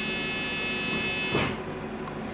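Interior running noise of a London bus: a steady high-pitched electrical whine over the drive noise, cutting off about one and a half seconds in, just after a brief loud rush of sound.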